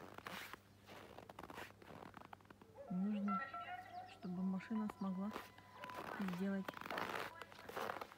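Footsteps crunching in deep, dry snow at about minus thirty, a scatter of short crunches. From about three seconds in, a voice speaks briefly over the steps.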